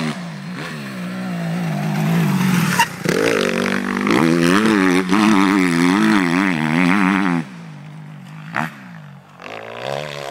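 Suzuki RM-Z 250 single-cylinder four-stroke motocross bike being ridden on a dirt track, its engine pitch rising and falling with the throttle through the gears. It is loudest in the middle and drops away sharply about seven seconds in, then picks up again near the end.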